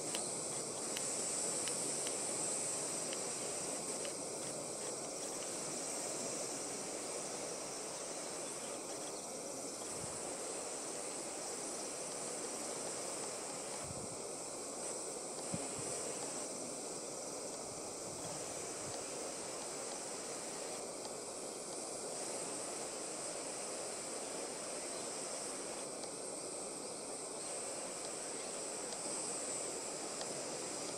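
A steady, high-pitched chorus of singing insects over a faint outdoor hiss.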